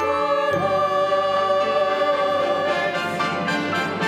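Church choir of mixed voices singing in harmony, holding long chords, with a new chord coming in about half a second in.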